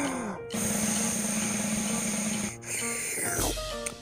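Blowing sound standing for a bubblegum bubble being blown: about two seconds of steady airy hiss over a low hum, then a falling glide in pitch, over light background music.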